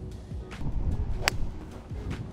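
A golf driver striking the ball off the tee: one sharp crack a little over a second in, over faint background music.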